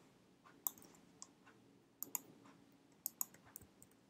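Faint, scattered clicks of a computer being worked with mouse and keys. Some clicks come singly and some in quick pairs.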